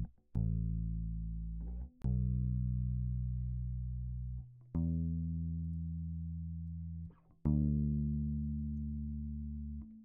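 Soloed bass guitar track playing four long, low notes. Each note is cut off abruptly and the next starts with a sharp click at the edit point. These clicks come from the hard edges of the quantized clips, left without crossfades.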